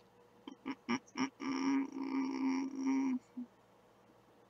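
A person's voice making wordless sounds: a few short voiced sounds, then a drawn-out hum held on one pitch for under two seconds.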